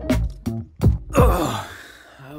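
Guitar-driven background music with a steady beat, giving way about a second in to a man's long, breathy sigh that falls in pitch.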